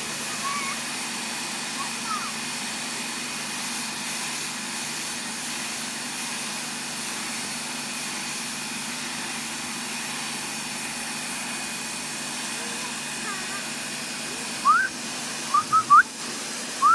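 Pressure washer running steadily, its motor and pump humming under the hiss of the high-pressure spray on the concrete driveway. Near the end, a few short, high, rising squeals cut in over it.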